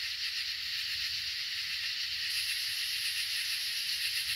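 Steady high-pitched hiss of the outdoor night air, with a finer, higher layer coming in a little past halfway.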